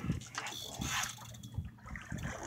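Water sloshing and lapping against a boat's hull, faint and uneven, with a few soft knocks.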